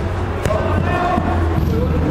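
A football is kicked once, a sharp thud about half a second in, among the voices of players calling out.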